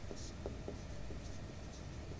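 Marker pen writing on a whiteboard: faint short strokes of the tip with a few light taps.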